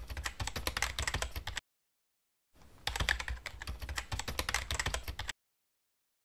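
Rapid computer-keyboard typing clicks in two runs, a pause of about a second between them, the second run cutting off abruptly about five seconds in.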